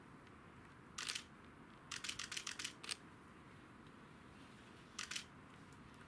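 Short, sharp clicks over faint background hiss: a couple about a second in, a fast run of about eight between two and three seconds in, and another pair about five seconds in.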